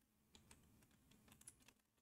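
Very faint typing on a computer keyboard: a few scattered keystrokes.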